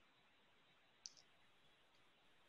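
Near silence on a video call, broken by one faint, brief click about a second in.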